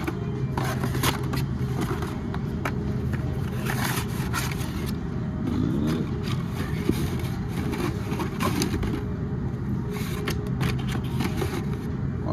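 Hot Wheels cardboard-and-plastic blister packs being handled and slid about on a display rack, with scattered light clicks and scraping, over a steady low background hum.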